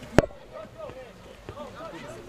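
Faint voices, with one sharp knock about a fifth of a second in.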